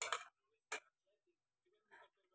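Two short faint clicks about three quarters of a second apart, typical of a utensil tapping on dishware.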